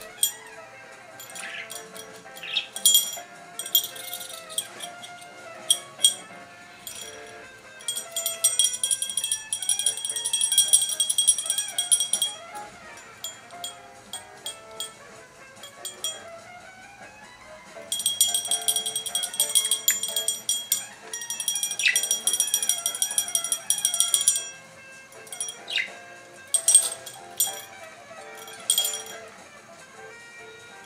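Small bells jingling over background music: two long runs of continuous shaking, about four and six seconds long, with short single jingles between them.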